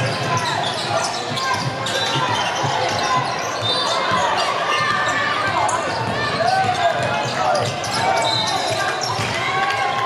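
Basketball game on a hardwood court in a large hall: the ball bouncing as it is dribbled, many short high shoe squeaks, and players' and spectators' voices.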